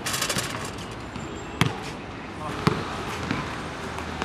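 A basketball hits the hoop with a brief rattle. It then bounces on the hard outdoor court, with two sharp smacks about a second and a half in and near three seconds.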